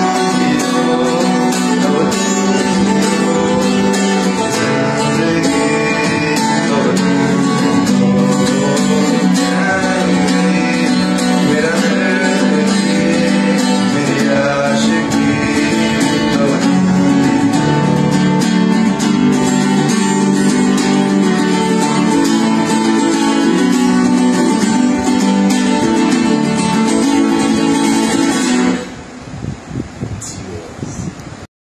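Acoustic guitar strummed while a man sings along, the music stopping shortly before the end.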